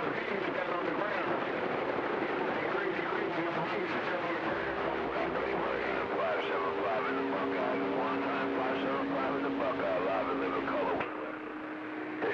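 CB radio receiving skip: several distant stations' voices garbled and overlapping in band noise, with steady low whistles coming and going among them. About a second before the end the noise thins and the sound goes quieter.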